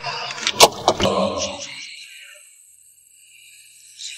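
Handling noises inside a car: two sharp clicks or knocks within the first second, followed by a rumbling noise that dies away about two seconds in.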